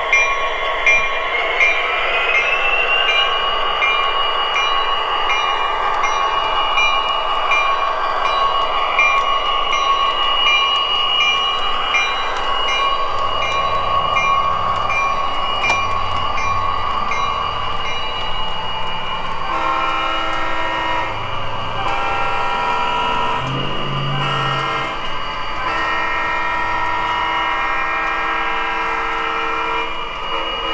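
Sound system of an MTH RailKing O scale EMD SD45 model diesel locomotive: a steady diesel engine drone that rises in pitch about two seconds in. A ringing pulse repeats about twice a second through the first half, and a series of horn blasts sounds in the second half.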